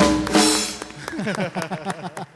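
Live drum kit and percussion closing a short flourish with two heavy hits, the first with a deep boom and a cymbal ringing out. From about a second in, laughter and a few hand claps follow.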